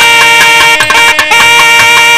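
South Indian devotional temple music, loud: a melody line holds long, steady notes with a few drum strokes under it.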